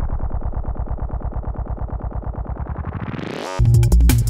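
A Roland SPD-SX sampling pad playing a synth bass loop through its filter effect as the knob is turned: the sound narrows to a muffled, fast-repeating pulse and then opens back up. It cuts out for a moment about three and a half seconds in, and the full beat with drums comes back.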